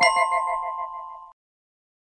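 Bell-like synthesized chime chord from a channel intro sting, ringing out with a fast wavering pulse and fading before it cuts off about a second and a half in.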